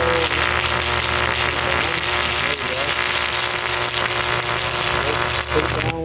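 Stick (arc) welding: the electrode's arc crackling and sputtering steadily on the steel, over the steady low hum of the welder, until the arc breaks off near the end.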